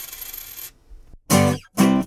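A dropped coin clinking and ringing as it settles, the ring dying away under a second in. Near the end, two short musical notes.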